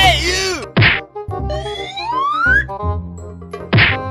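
Cartoon-style comedy sound effects over background music: a wobbling boing at the start, a loud whack just under a second in, a rising whistle glide, and a second whack near the end.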